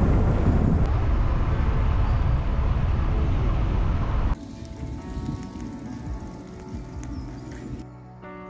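Loud, even wind and road rumble on a camera mounted on the front of a moving car, cutting off suddenly a little over four seconds in. Soft background music with sustained notes follows.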